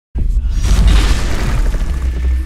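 Cinematic intro sound effect: a deep boom that starts abruptly just after the start and rumbles on, with a hiss swelling over it.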